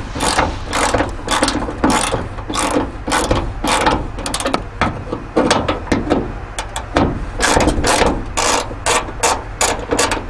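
Hand socket ratchet clicking in runs of rapid strokes with short pauses, as a 12 mm bracket bolt is loosened.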